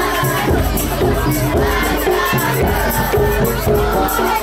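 Sholawat bil jidor music, voices singing over drums and rattling percussion, with a crowd shouting and cheering over it.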